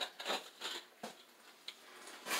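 Faint scuffing and rustling: a few soft scrapes, and one sharp click near the end.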